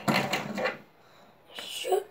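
A small plastic fidget spinner handled in the fingers: a sharp click, then a rattling clatter lasting under a second, and another brief rattle near the end.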